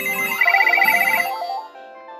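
Several telephones ringing at once with electronic ringtones: a rapid high warbling trill and a stepped, tune-like ring layered over steady tones, loudest around the middle and easing off near the end.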